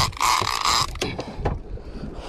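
Penn International 30T conventional fishing reel being cranked, its gears whirring in short uneven spurts through the first second, then low knocks from handling the rod and reel.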